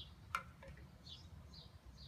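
Faint, high bird chirps in the background, with one sharp click about a third of a second in.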